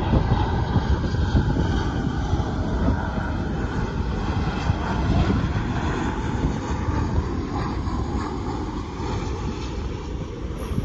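Distant, steady jet noise from a four-engined Airbus A340-300 (CFM56 turbofans) on final approach, mixed with wind buffeting the microphone.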